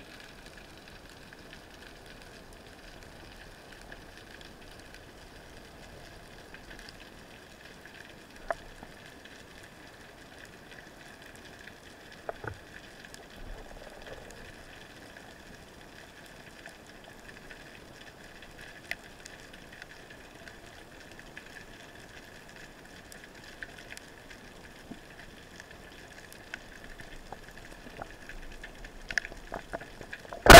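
Faint underwater ambience picked up by a diving camera: a steady hiss and crackle with a few scattered sharp clicks, the loudest about eight and a half seconds in.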